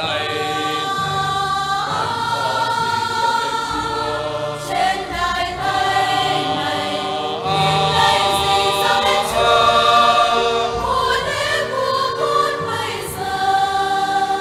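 Mixed choir of men's and women's voices singing a Vietnamese Catholic offertory hymn in long, held notes that move in pitch.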